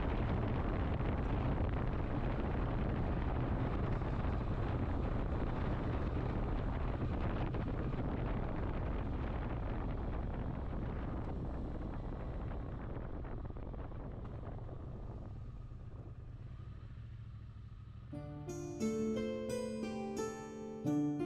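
Motorcycle riding sound: a Triumph Speed Twin 900's parallel-twin engine running steadily under wind and road noise, slowly fading down. Piano-like music comes in near the end.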